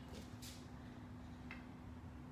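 Quiet room tone with a faint steady hum, broken by a couple of faint brief ticks.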